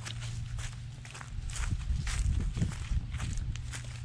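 Footsteps crunching on dry fallen leaves and gravel, about two steps a second, with wind rumbling on the microphone.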